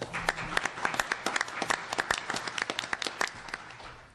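Audience applauding, dense clapping that thins out and dies away near the end.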